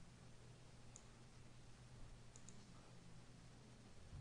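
Near silence over a steady low hum, with a few faint computer mouse clicks: one about a second in and a quick pair about halfway through.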